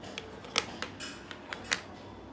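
Clicks and light knocks of small plastic wireless-microphone units being handled and set down on a table, about half a dozen sharp clicks, the loudest about half a second in and near the end.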